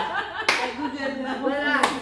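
Two sharp hand claps, one about half a second in and another near the end, amid women's voices and laughter.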